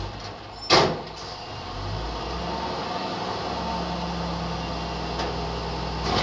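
Front-loader garbage truck lifting a metal dumpster: a single loud metal clank about a second in as the forks take the bin, then the engine and hydraulic lift running steadily as the dumpster rises overhead.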